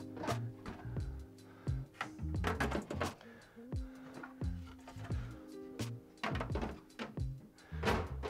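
Background music with held tones and a repeating bass line. Over it, several separate plastic clacks and thunks as clear plastic dust covers are lifted off the turntables and the mixer.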